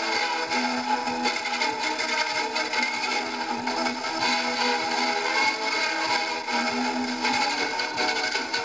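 Pathé Diamond portable suitcase gramophone playing a record: music with no bass at all, under a steady hiss of surface noise.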